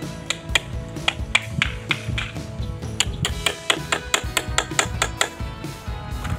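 A claw hammer tapping lightly and repeatedly at a wooden straightedge board held against a wall edge: many sharp taps, coming quicker in the second half, with background music underneath.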